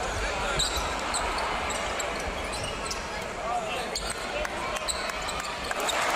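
Live sound of a basketball game in an arena: crowd noise and voices, with the ball bouncing on the court.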